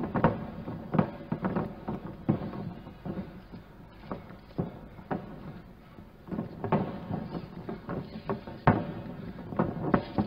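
Live ringside sound of a bare-torso grappling bout: scattered sharp slaps and thuds from palm strikes, kicks and feet on the canvas, coming at irregular moments through the whole stretch.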